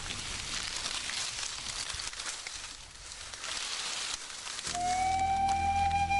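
Dry maize stalks and leaves rustling and crackling as people push through them. About 4.7 seconds in, flute music starts suddenly with a long held note over a low drone.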